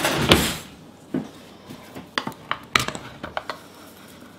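Kitchenware being handled on a wooden cutting board: a short burst of noise at the start, then a scatter of light clicks and knocks as a can and utensils are picked up.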